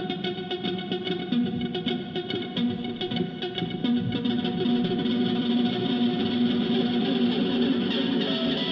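Live rock band playing, with electric guitar run through effects to the fore over bass, keyboards and drums, recorded from the audience with open-air reverberation.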